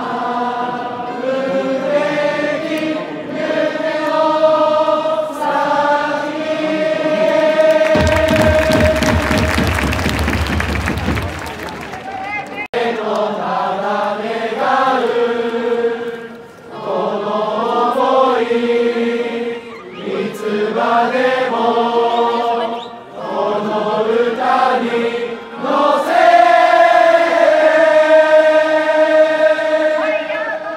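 Baseball cheering-section crowd singing a team cheer song in unison with the cheering band's trumpets. About a third of the way in a burst of loud noise covers it, then after a sudden cut a player's trumpet fanfare and chant begin, ending on a long held note.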